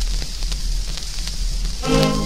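Crackle and hiss of an old shellac 78 rpm record's surface noise, with scattered clicks, before the song's instrumental introduction comes in near the end with sustained notes.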